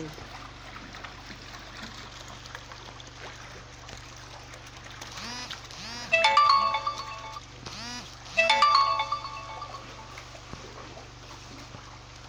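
A ringtone-like electronic melody sounds twice, about two seconds apart. Each phrase lasts a little over a second and is led in by a short swooping glide, over a low steady background hum.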